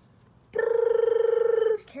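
A person imitating a drumroll with a trilled, buzzing "drrrr" held on one steady pitch for about a second, starting half a second in and breaking off into a laugh at the end.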